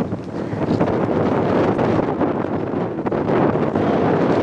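Strong wind buffeting the microphone, a steady loud rush.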